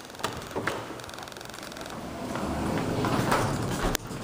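Otis hydraulic elevator's sliding doors moving: a few clicks, then a rising rumble that ends in a sharp clunk near the end.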